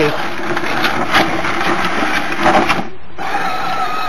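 Small electric motor of a Chicco Ducati children's ride-on motorcycle whining steadily as it drives, with light clicks and rattles of the plastic toy. The sound breaks off briefly about three seconds in, then a higher, steady whine carries on.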